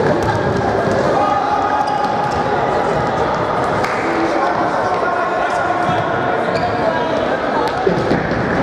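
Futsal ball being kicked and thudding on a wooden gym floor, a few sharp impacts, with players' calls echoing in the hall.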